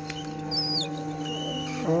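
Steady hum of a hot-air rework station blowing on a laptop motherboard while a capacitor is heated off with tweezers. A few short, high chirps sound over it about half a second in and again near the middle.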